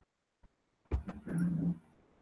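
A video-call microphone opening up: a few faint clicks, a thump about a second in, then a short low pitched sound lasting under half a second, and after it a steady faint room hiss where there was digital silence before.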